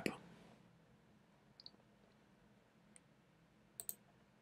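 Near silence with a few faint clicks from computer input, about one and a half seconds in, again around three seconds, and a quick pair near the end.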